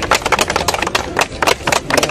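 A small group clapping by hand: quick, uneven sharp claps, many a second, over a low steady rumble.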